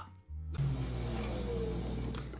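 A car engine running steadily, heard through the drama's soundtrack with faint music, starting about half a second in after a brief silence.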